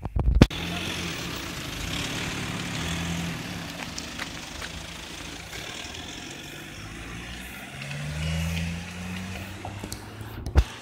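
Road traffic: car engines running past with a low hum that swells twice, about two seconds in and again near the end, over a steady outdoor hiss. A couple of sharp knocks right at the start.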